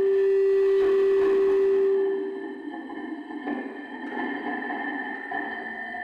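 Electronic sound installation of sustained pure tones. A strong low drone holds and then fades out about two seconds in, while several higher steady tones and a soft grainy texture carry on.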